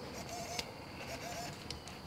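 Quiet background with a single faint click a little over half a second in, from a bolt being handled while the centerstand is fitted.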